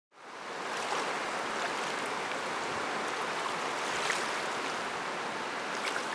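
Rushing river water: a steady, even rush of fast-flowing whitewater, fading in over the first moment.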